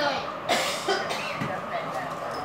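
A person coughs once, about half a second in, among a woman's talk.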